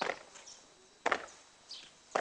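Army boots stamping on packed dirt in marching drill: two sharp stamps about a second apart.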